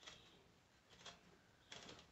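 Near silence, with a few faint clicks from a hand handling the typewriter's platen knob, about a second in and again near the end.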